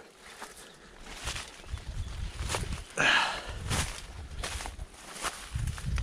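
Footsteps of a person wading through dense undergrowth, with leaves and stems brushing and rustling against him in irregular strokes, one louder swish about halfway.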